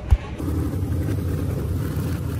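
One thump near the start as a hand knocks against the phone, then a steady low rumble, like a vehicle engine, from about half a second in.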